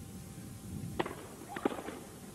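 A tennis racket striking the ball on a serve about a second in, then a quick cluster of knocks about half a second later as the ball bounces and is hit back.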